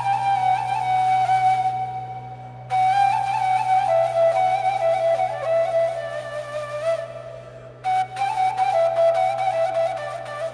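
Instrumental interlude in a Turkish ilahi: a flute plays a slow melody in phrases over a steady low drone, with two short breaks between phrases, about two and about seven seconds in.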